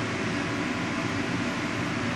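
Steady mechanical background noise, an even hum and hiss with no distinct events.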